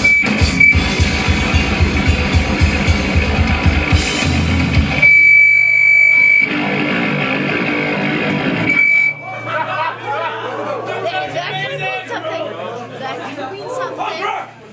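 Live rock band, a drum kit and distorted electric guitars, playing fast and loud, with the drums stopping about five seconds in. A steady high-pitched whine rings over held guitar chords until about nine seconds in, then crowd chatter and talk take over.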